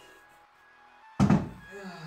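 A single heavy thunk about a second in: a Puch moped engine is set down on a wooden workbench.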